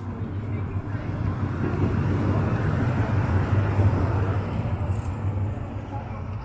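A city tram passing close by: a low rumble that swells to its loudest about three to four seconds in, then fades.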